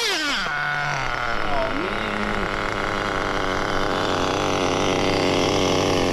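A TLR 8ight XT nitro truggy's small glow-fuel engine drops from high revs during the first second, then idles steadily with a fast, buzzy warble.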